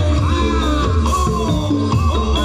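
Loud live accompaniment music for a Topeng Ireng dance, played over outdoor PA loudspeakers: a heavy, steady bass beat with a wavering, gliding melody line above it.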